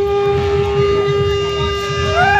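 Conch shell (shankh) blown in one long, steady note.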